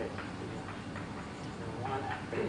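Chalk tapping and scraping on a blackboard as a line is written, a run of light clicks a few times a second.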